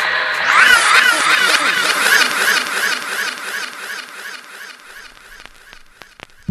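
Electronic dub-siren style sound effect: a quick rising-and-falling chirp repeated about four or five times a second, fading away over several seconds.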